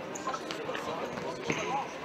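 A futsal ball kicked and bouncing on a sports-hall floor: two sharp knocks about a second apart.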